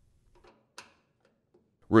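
Near silence, broken by one faint, brief click about a second in. A narrating voice begins right at the end.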